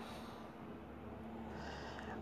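Quiet room tone with a faint steady hum, and a soft breath drawn near the end, just before speech resumes.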